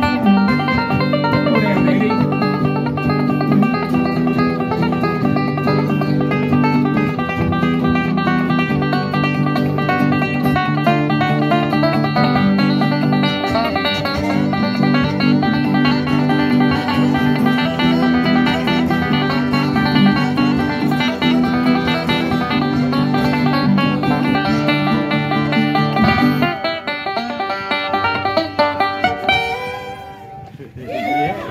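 Bluegrass instrumental played on fiddles and a five-string banjo, with fast picked banjo notes over the fiddles. The playing thins out and drops in level in the last few seconds before stopping.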